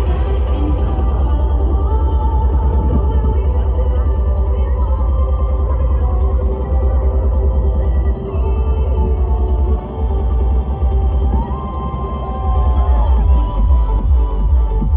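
A DJ's live trance set playing loudly over a sound system, electronic dance music with a steady pounding bass beat; the bass drops out briefly a couple of times in the second half.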